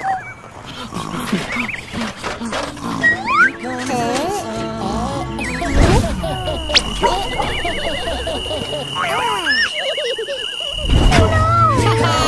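Background music with cartoon voice effects: squeaky, sliding, wobbling character chatter and noises, with a held high tone through the second half.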